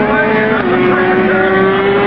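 Racing motorcycle engines running at high revs as bikes pass on the track; the pitch drops a little about half a second in, then climbs slowly.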